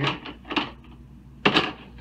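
Handling noise as a small screwdriver is picked up: two brief knocks about a second apart, the second louder.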